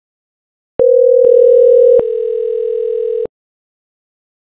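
Softphone ringback tone for an outgoing VoIP call as it rings through to the receiving extension: a steady low telephone tone of about two and a half seconds, starting near the end of the first second and dropping slightly in pitch and level about halfway through.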